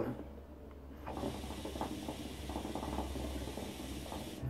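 Hookah drawn on through its hose: a rapid, irregular bubbling from the water in the base, starting about a second in and lasting nearly three seconds.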